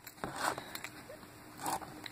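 Faint, light scratching and rustling from a pencil and fingers working on the paper backing of a small square of foam mounting tape, with a few soft ticks.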